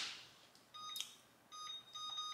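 Electric oven's control panel beeping as it is switched on: a few short, faint, high beeps in two small groups, with a button click between them.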